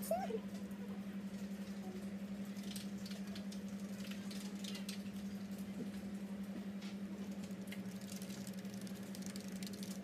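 A steady low hum that pulses evenly throughout, with faint light clicks scattered over it and a brief squeaky glide right at the start.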